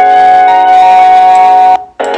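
Background music with long held notes, cutting off abruptly near the end.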